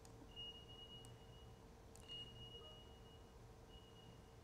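Near silence: faint room tone with a low steady hum and a faint high-pitched tone that sounds three times, each beep lasting over a second.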